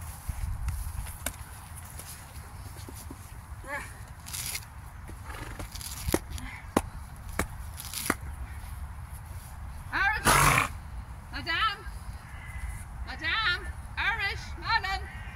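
Grass being pulled up by hand: a series of short, sharp tearing snaps, with a steady wind rumble on the microphone. After a loud burst about ten seconds in, a few short wavering vocal sounds follow near the end.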